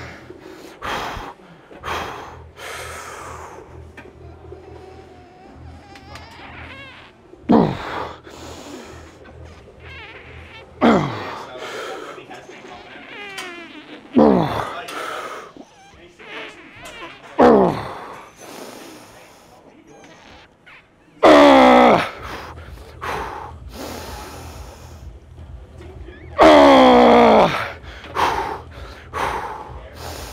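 A man's strained grunts and groans of effort during a heavy set on a pendulum leg press, about six of them a few seconds apart, each falling sharply in pitch, with fainter breathing in between. The last two are longer and louder as he nears failure.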